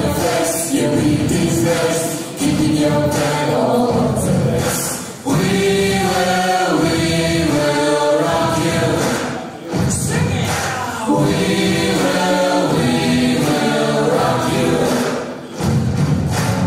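A mixed vocal ensemble of women's and men's voices singing together into microphones, in phrases broken by short pauses.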